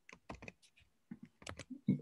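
Computer keyboard typing: a quick, irregular run of faint key clicks.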